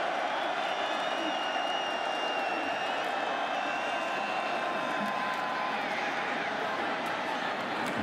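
Football stadium crowd noise: a steady wash of many voices from the stands, holding level through a play.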